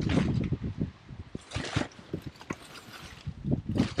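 Thin plastic carrier bag crinkling and rustling as a hand rummages inside it and draws out a small box. The rustle is loudest in the first second, with a sharper crinkle about a second and a half in, then fainter scattered crackles.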